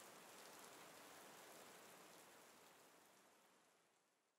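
Near silence: a faint hiss of room tone that fades away over the first couple of seconds.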